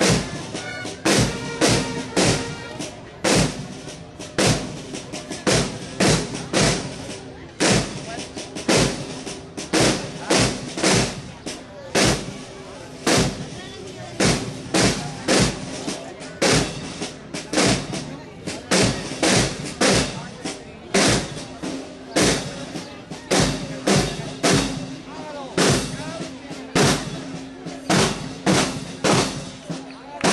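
Marching drum corps playing a snare-drum cadence: loud, sharp unison strikes in quick repeated groups, with a faint steady low tone beneath.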